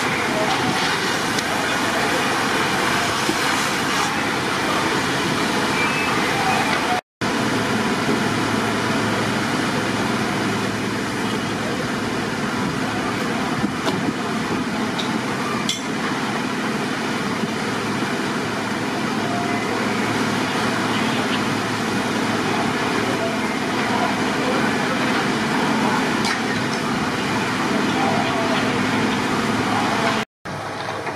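Steady din of fire apparatus engines running at a building fire, with indistinct voices mixed in. The sound drops out for a moment about seven seconds in.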